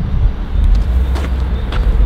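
Steady low rumble of roadside traffic noise, with a few faint clicks.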